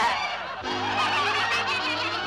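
A cartoon ghost's honking scare cry, held for over a second from about half a second in.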